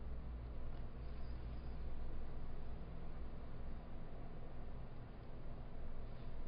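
Room tone: a steady low electrical hum and hiss from the recording, with a couple of faint clicks.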